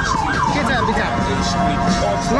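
Emergency vehicle siren in its fast yelp, the pitch sweeping up and down about four times a second, changing about a second in to a steady blaring tone.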